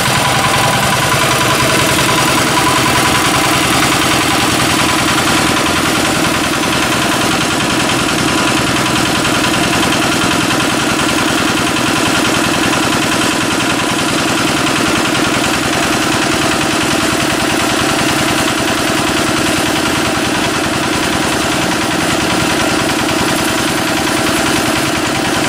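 Small engine driving a belt-driven air compressor, running steadily at an even speed.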